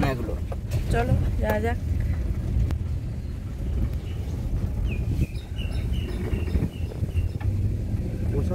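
Inside a Suzuki car: a steady low engine and road rumble as the car pulls slowly along a street, with brief voices in the first couple of seconds.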